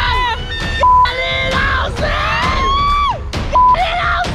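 Roller coaster riders screaming and yelling in long, gliding shouts. Two short, loud one-pitch beeps, about a second in and near the end, are censor bleeps over shouted swear words.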